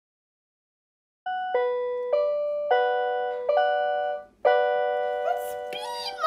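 Small electronic keyboard played one key at a time, about six notes and two-note chords starting a second or so in, each note decaying slowly. A voice comes in near the end.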